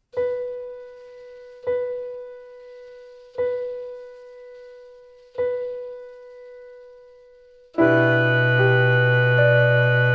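Keyboard music: a single mid-pitched note is struck four times, about two seconds apart, each left to ring and fade. Near the end a full sustained chord with a deep bass comes in, louder.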